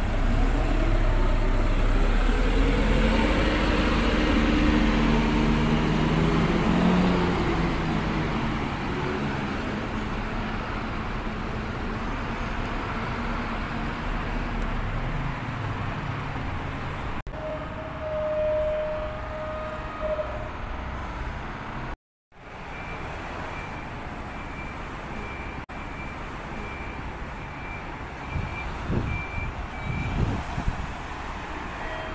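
A large diesel bus engine running close by, with a deep rumble and an engine note that rises then falls over several seconds, amid street traffic. Later there is a short steady electronic tone, then a fast run of short high-pitched beeps.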